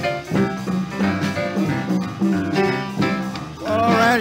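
Boogie-woogie piano with a rolling left-hand bass figure under right-hand chords, and a guitar comping chords on the beat behind it, in an old mono studio recording.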